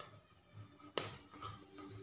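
Sharp clicks of hands striking together while signing. The loudest is about a second in, with fainter ones at the start and near the end.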